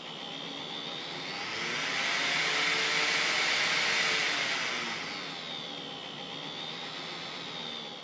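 A 12 V blower-type part-cooling fan on a 3D printer hot end, run on the firmware's soft PWM setting meant to get rid of the PWM whine at low fan speeds. It speeds up over the first few seconds and slows down again, its air noise and faint pitch rising and falling with the speed.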